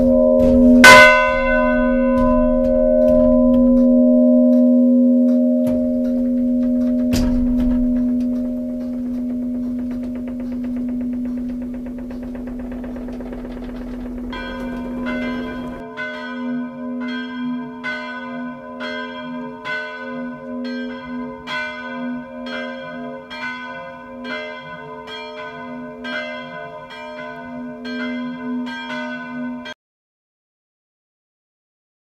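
The two church bells in a small wooden tower, swung and ringing. A loud clapper strike comes about a second in and another at about seven seconds, with a long hum ringing on between them. From about fourteen seconds an even peal of strokes follows, about one and a half a second, until the sound cuts off just before the end.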